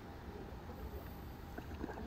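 Low, muffled rumble of moving water with a few faint clicks, as heard by a camera held underwater.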